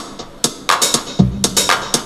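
Roland TR-909 drum machine playing a programmed electronic pattern of sharp clap and hi-hat hits, with one deep low hit just past a second in.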